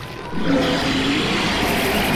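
A giant monster's deep growl starts about half a second in and holds steady, with a wavering low pitch over a rumble, building toward a roar.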